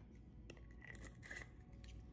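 Near silence with a few faint clicks and scrapes of small objects being handled on a tabletop, one near the middle carrying a brief thin squeak.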